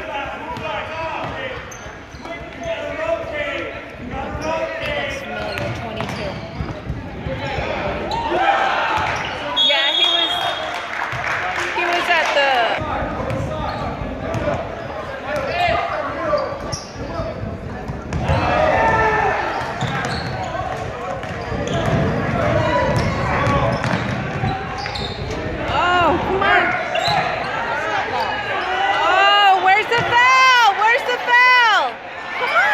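Basketball being dribbled and bouncing on a hardwood gym floor during play, amid the voices of spectators and players in a large, echoing gym.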